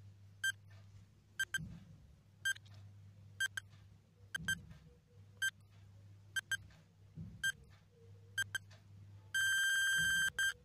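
Countdown timer sound effect: short electronic beeps about once a second, some in quick pairs, ending in one long steady beep near the end as the count reaches zero.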